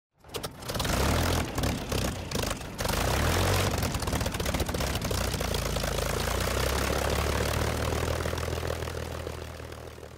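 Aircraft engine starting with a few irregular coughs, then running steadily, fading out over the last couple of seconds.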